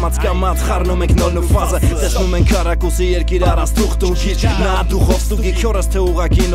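Hip hop track: a male rapper rapping in Armenian over a beat with a steady deep bass and recurring low drum hits.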